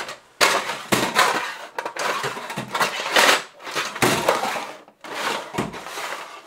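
Drawers of steel Bisley multi-drawer cabinets being slid open and shut one after another, with screwdrivers and other hand tools rattling inside them: a run of sliding, clattering metal strokes about a second apart.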